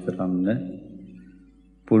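A Buddhist monk's voice preaching in Sinhala. The phrase trails off after about half a second into a brief pause, and he resumes just before the end.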